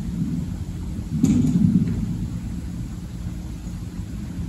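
A steady low rumble, with a sudden muffled thump a little over a second in that is the loudest sound.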